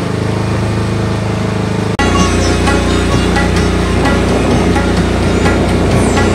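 A steady boat engine drone for about two seconds. It cuts off abruptly and background music takes over.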